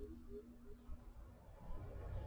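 Faint room tone with a low steady hum that stops about one and a half seconds in.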